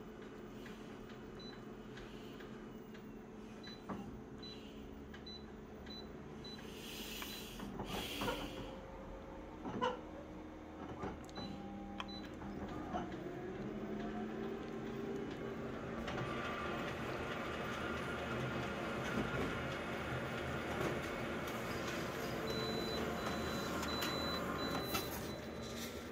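Colour office copier starting a copy job: a few short faint beeps and clicks, then about halfway through the machine winds up and runs steadily as it prints a full-colour copy.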